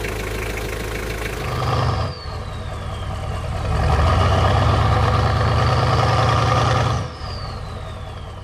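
A four-cylinder turbo diesel pickup engine idling steadily for about two seconds. Then the sound cuts to something else: a falling whoosh, a louder steady engine-like rumble that swells up and holds for about three seconds, then a second falling whoosh as it drops away.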